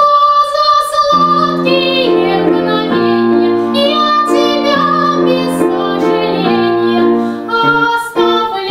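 Young female soprano singing a Russian song with grand piano accompaniment. A long held note opens after a brief pause, and the piano comes in about a second in.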